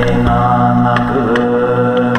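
Live-looped Buddhist mantra chanting: layers of a man's chanting voice held as a steady drone, with a sung line rising and gliding over it, and short beatboxed percussion clicks repeating about every half second.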